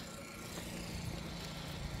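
A faint, steady low hum of a running engine, with no change in pitch.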